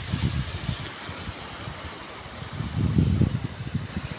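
Wind buffeting the phone's microphone in irregular low gusts, strongest near the start and again about three seconds in, over a steady faint hiss.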